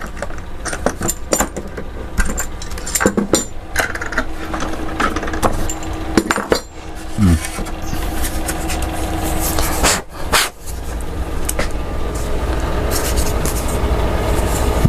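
Metal clamps and hand tools clinking and clattering on a workbench as a clamped setup is loosened and taken apart, with scattered sharp knocks of hard pieces being set down. A low steady hum runs underneath.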